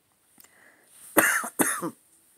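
A man coughs twice in quick succession, a little over a second in, after a faint intake of breath.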